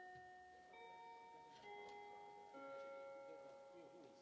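A soft, slow melody of bell-like chime notes, a new note starting about every second and ringing on so that the notes overlap.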